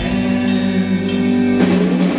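Live rock band playing: electric guitar, keyboard and drum kit holding sustained chords, with a chord change about one and a half seconds in, recorded from among the audience.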